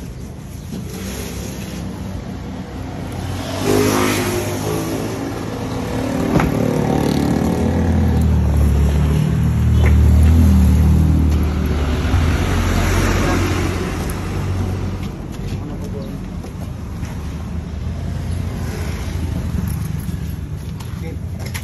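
A motor vehicle's engine grows louder from about four seconds in, is loudest around ten seconds and fades away by about fourteen seconds, over a steady background hum.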